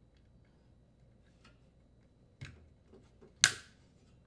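Metal spring retaining clip snapping onto a washer's plastic drain pump housing, securing the pump to the motor: faint handling ticks, a small click about two and a half seconds in, then a loud sharp snap about a second later.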